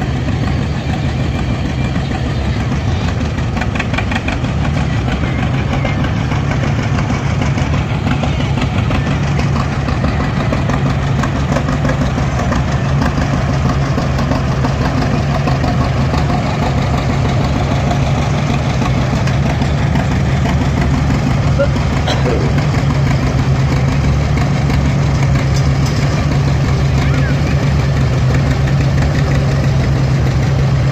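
Engines of slowly passing parade vehicles, chiefly vintage farm tractors, making a steady low drone throughout, with onlookers' voices mixed in.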